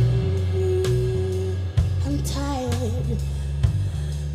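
A woman singing over a live band with a drum kit: she holds one long note for about a second and a half, then from about two seconds in runs through a bending, wavering phrase.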